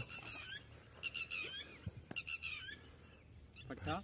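Short runs of high-pitched, squeaky chirping calls of small birds, repeating about once a second.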